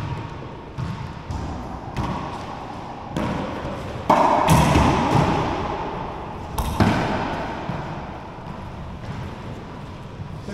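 Racquetball rally: a string of sharp smacks as the ball is struck by racquets and hits the court walls, each echoing in the enclosed court. The loudest hits come about four seconds in and just before seven seconds.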